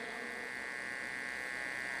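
Low, steady electrical hum and buzz from the preacher's microphone and PA sound system, with no change through the pause.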